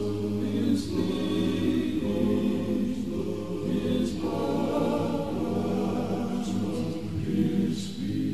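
Gospel vocal group singing a sacred song in close harmony, holding long chords in phrases a few seconds long, with crisp sung 's' sounds where the phrases end.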